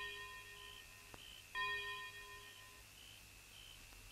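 A bell-like chime rings out and is struck again about a second and a half in, each stroke fading over a second or so. Under it runs a steady high chirping of night insects.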